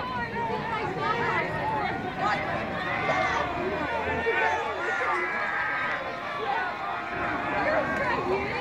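Crowd of spectators chattering and calling out, many voices overlapping at a steady level.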